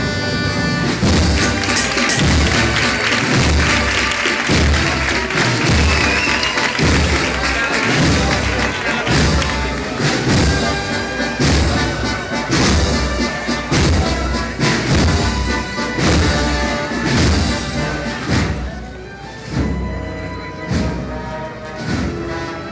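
A procession band playing a slow march, its bass drum beating steadily about one and a half times a second under sustained held notes.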